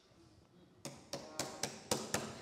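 A moment of silence, then about five light taps or knocks about a quarter second apart, starting just under a second in.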